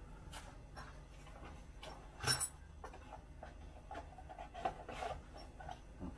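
Faint handling of a small cardboard parts box: light clicks and rustles, with one louder brief rustle a little over two seconds in.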